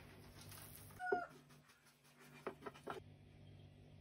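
Quiet kitchen sounds: a short, high, pitched squeak about a second in, then a few light clicks of a metal spoon as grated walnut filling is spooned from a bowl onto the pastry.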